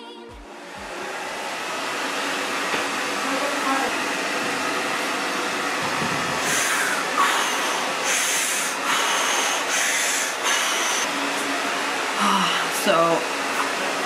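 A person doing Wim Hof-style power breathing: a run of quick, forceful breaths through the mouth in the second half, over a steady whooshing background noise.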